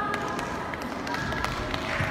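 Indistinct voices murmuring in a large, echoing sports hall, with a few light clicks and taps.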